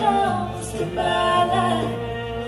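Bluegrass vocal harmony: a woman's voice leads a slow, gliding sung line with other voices joining in, with little instrumental backing.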